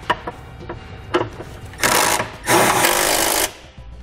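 Cordless impact driver running in two short bursts, the second about a second long, driving the exhaust hanger bolts back in. A few sharp metal clicks come before them.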